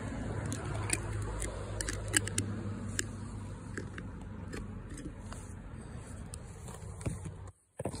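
Handling noise from a phone held against a hand and knit sleeve: a steady low rumble with scattered clicks and scratches. It cuts out abruptly near the end.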